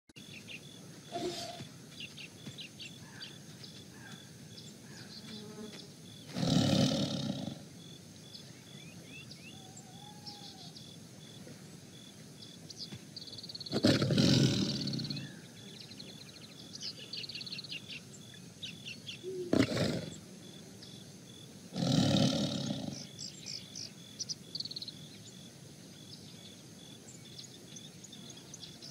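Tiger roaring and growling: three long roars, each about a second or more, near 7, 14 and 22 seconds in, with shorter calls around 1 and 19.5 seconds. Birds chirp throughout.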